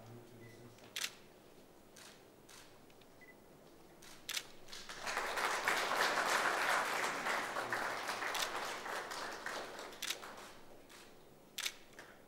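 Audience applause that starts about five seconds in, peaks briefly and fades out over the next few seconds. Single camera shutter clicks sound about a second in, just after four seconds, and near ten seconds.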